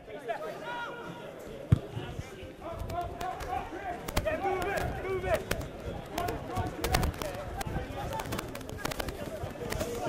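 Players' shouts and calls ring out across a rugby pitch in open play, mixed with scattered thuds and knocks. A sharp, loud knock comes just under two seconds in.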